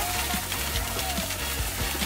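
Background music over a steady hiss of water jets spraying down from rock walls and splashing onto a metal drain grate.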